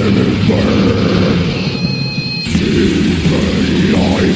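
Black/death metal from a 1994 cassette demo: dense, distorted full-band playing. About halfway through it briefly thins out, leaving a couple of high steady tones, before the full band comes back in.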